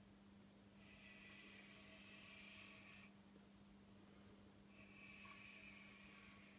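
Near silence: a steady low hum with two faint breaths, each lasting about two seconds, the first about a second in and the second near the end.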